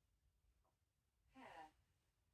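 Near silence: room tone, with one brief, faint vocal sound about one and a half seconds in.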